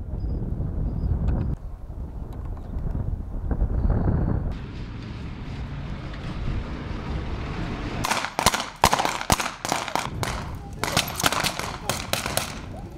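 A low rumble, then from about eight seconds in a rapid, irregular string of gunshots, about a dozen in four seconds, during a firing exercise.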